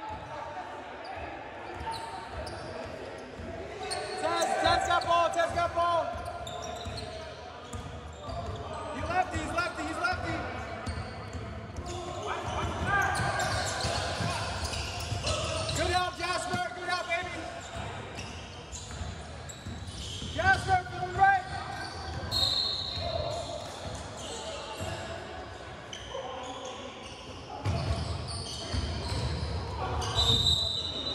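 Basketball being dribbled on a hardwood court in a large gym, the bounces ringing through the hall. Players shout to each other in bursts several times.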